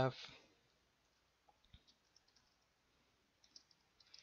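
Faint computer keyboard keystrokes as a line of code is typed: a few scattered clicks about a second and a half in, then a quicker run of keys near the end.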